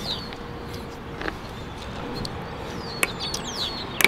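Steady outdoor background noise with a short bird chirp at the very start, and a couple of faint clicks, one about a second in and one about three seconds in, as the backup camera is handled against its bracket.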